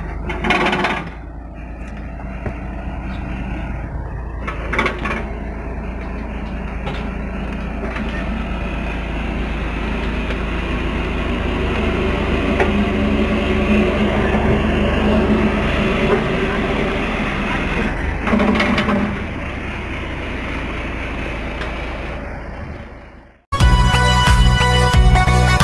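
Engine-driven net-hauling machinery running steadily with a low drone that grows louder midway, with a few brief louder bursts. Electronic intro music cuts in abruptly near the end.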